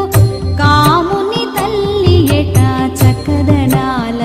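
Telugu devotional song in Carnatic style: a gliding, ornamented melody, sung by a woman, over a steady drum beat.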